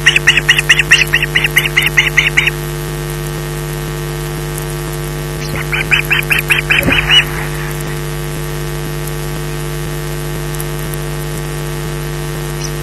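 Osprey calling: a fast run of high, piping calls, about four a second, that stops about two and a half seconds in, then a second shorter run around six to seven seconds in. A steady electrical hum runs underneath.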